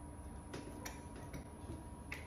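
A few faint, light ticks and taps as a metal door handleset is held against a door and its hole position is marked with a pencil.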